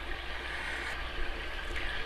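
Steady hiss of background noise with a low, even hum underneath.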